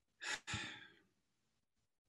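A person sighs about a second long: a short breath, then a longer breathy exhale that fades out.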